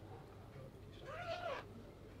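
A single short, high vocal call, about half a second long, rising then falling in pitch, about a second in, over a low steady background hum.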